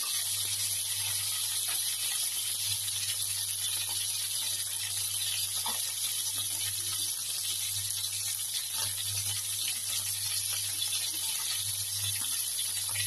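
Chicken wings sizzling in hot oil in a skillet, a steady hiss with occasional small pops and spatters.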